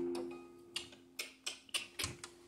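An acoustic guitar chord rings out and fades away over about a second. After it come five short, quiet clicks from muted strings and the hand on the guitar, a fraction of a second apart.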